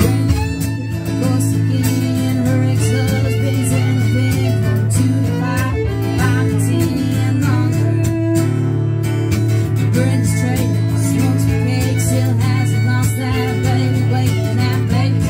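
Live acoustic country music: a strummed acoustic guitar and a bowed fiddle playing together, with a woman singing, amplified through a PA.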